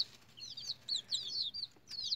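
Young chicks peeping: a run of short, high chirps, each sliding down in pitch, several a second.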